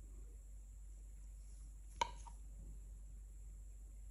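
A single sharp tap about halfway through, a brief knock of a hard object with a short ring, over faint room tone.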